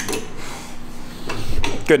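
Short bits of men's voices with light clinks and rubbing of metal engine parts being handled, a sharp click at the start, and "good enough" spoken at the end.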